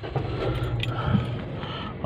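Steady low hum of a car heard from inside its cabin.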